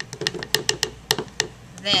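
A plastic tablespoon measure tapped against a plastic bowl to knock cornstarch out of it. It makes a quick, uneven run of about a dozen light clicks.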